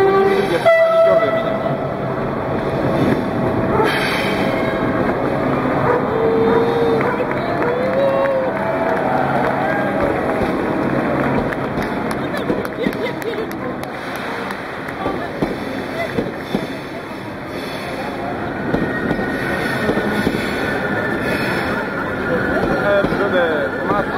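Long-distance passenger train of Russian sleeper coaches rolling slowly through a station under a glass train shed: a steady rumble of wheels on rails with scattered clicks, then a thin high squeal near the end. Crowd voices run alongside.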